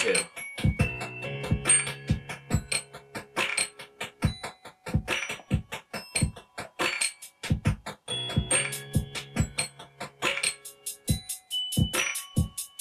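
Electronic beat from Ableton Live clips: sharp drum hits about three a second over held synth tones, with the bit depth lowered by Ableton's Redux effect.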